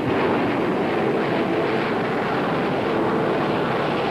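Four-engine jet airliner's engines running as it taxis, a steady rushing noise.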